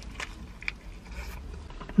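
A person biting into and chewing a shawarma wrapped in aluminium foil: quiet chewing with a few short crackles of the foil.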